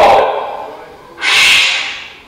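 A man's voice trailing off, then one loud, breathy exhale lasting under a second, about a second in, from a recorded sermon playing back.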